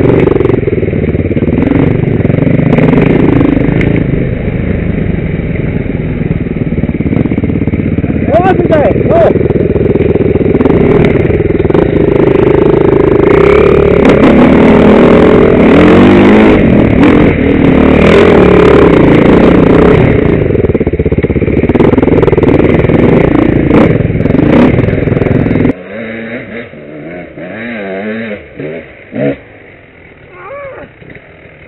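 Off-road motorcycle engine running hard under load, the revs rising and falling as the bike rides a rough trail, picked up on board with wind and rattle. About 26 s in the sound drops off sharply, leaving a much quieter engine.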